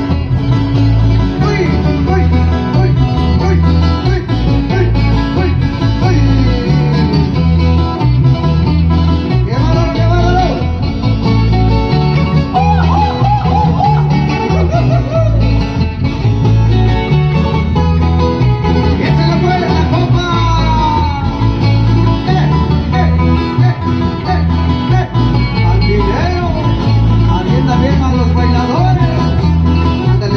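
Loud dance music from a band amplified through large loudspeakers: plucked strings over a bass line repeating in an even beat, with a singing voice at times.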